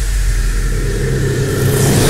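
Road noise inside a moving vehicle at motorway speed: a steady low rumble with a rush of higher noise that swells near the end.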